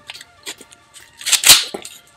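Mossberg 500 pump-action shotgun being handled: a faint click about half a second in, then the forend slid along the action with a short, sharp sliding clack about one and a half seconds in.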